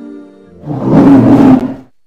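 Intro music ending, then a loud animal roar sound effect lasting just over a second that cuts off near the end.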